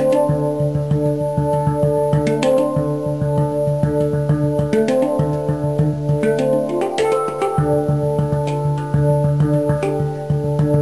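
Background music: held chords whose notes change every few seconds, with a steady pulse underneath.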